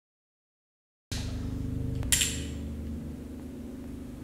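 Silence for about a second, then a steady low hum of room noise, with one sharp click about two seconds in.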